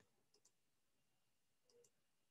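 Near silence with faint computer mouse clicks, two quick pairs of clicks about a second apart, as a slide thumbnail is selected in PowerPoint.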